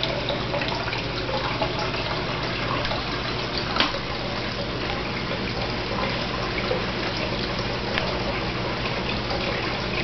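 Aquarium water trickling and bubbling steadily over a low, steady hum, with scattered small drips and clicks; one sharper click comes a little under four seconds in.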